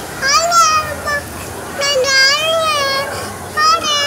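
A toddler girl singing a Tamil song in a high, thin voice, drawing out long wavering notes. She breaks off briefly about a third of the way in and again near the end.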